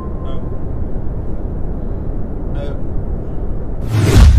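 Steady low rumble of a subway train running, with a thin steady tone that stops just after the start.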